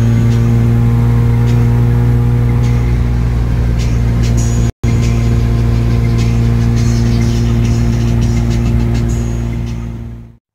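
A 1982 Toyota Corolla's four-cylinder engine running at a steady cruise, heard from inside the cabin with road noise. The sound cuts out for an instant a little before halfway.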